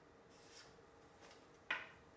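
Quiet handling of paper slips on a desk: a few faint rustles, then one short, sharper sound near the end.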